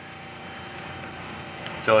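Steady background hum with a faint steady tone running under it. A man says "So" near the end.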